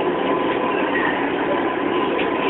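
Steady running noise of a passenger train heard from inside the carriage, with a faint steady whine.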